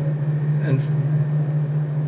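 A steady, loud low hum on one unchanging pitch, with a single short spoken word a little under a second in.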